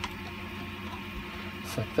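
Quiet handling of light 3D-printed plastic parts as they are lifted apart, with one sharp click at the start, over a steady low hum.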